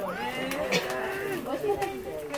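A person's long drawn-out vocal sound, held for over a second, like an 'ooh' or 'aww', with a few short crinkles from the paper gift bag being handled.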